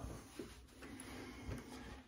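A quiet pause: faint room tone with two soft, low bumps, about half a second in and again about a second and a half in.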